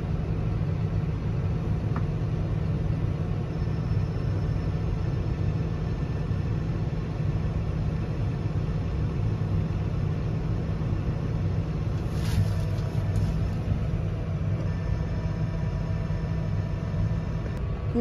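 Tractor engine running steadily, heard from inside the cab, while the hydraulics slowly raise the folding roller wings. A brief click comes about twelve seconds in.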